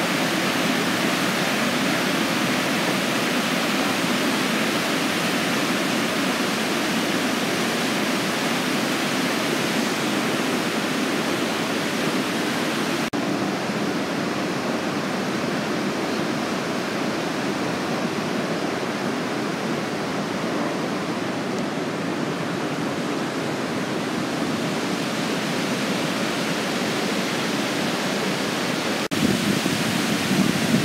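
Steady rushing whitewater of the Niagara River rapids, an even noise with no breaks. About thirteen seconds in the sound turns a little duller, with less hiss, and brightens again just before the end.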